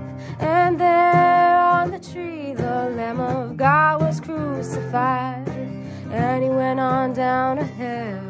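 A woman singing a slow worship song over a strummed acoustic guitar, in sung phrases with short breaks between them.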